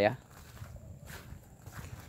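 A man's voice trails off at the start, then faint footsteps on soil for the rest.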